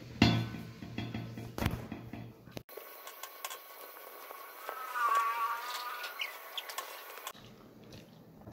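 Soft clicks and taps of fingers and food against a metal plate while eating by hand. After an abrupt cut it goes quieter, with a brief warbling tone about five seconds in.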